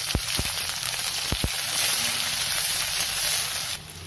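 Chopped onion sizzling in hot oil in a wok while a metal spatula stirs it, with two pairs of soft knocks near the start and about a second and a half in. The sizzle drops away just before the end.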